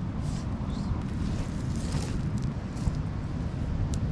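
Steady low rumbling wind noise on the microphone, with a few faint clicks.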